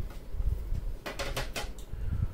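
Hard plastic graded-card slabs being handled on a desk mat: a low rumble of handling, with a few sharp plastic clicks and knocks a little past the middle.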